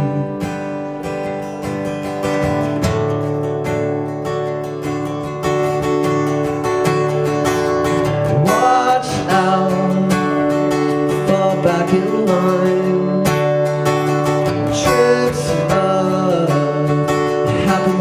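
Steel-string acoustic guitar strummed steadily in a live solo song, with a man's voice singing over it at times.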